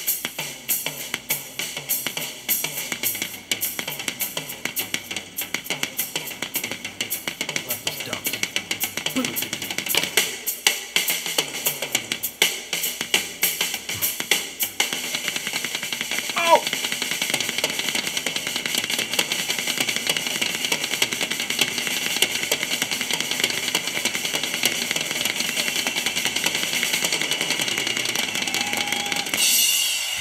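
Live rock drum kit solo: rapid strokes on snare, toms and bass drum with cymbals and hi-hat. About halfway through it settles into a dense, unbroken run of triplets.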